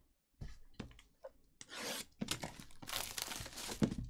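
Plastic shrink wrap being torn and crinkled off a sealed trading card box, a dense rustling that starts about one and a half seconds in. A loud thump comes near the end.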